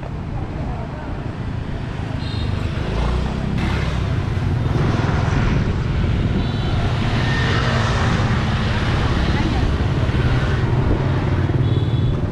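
Steady low vehicle rumble that builds louder over the first few seconds and then holds, with a hiss swelling in the middle.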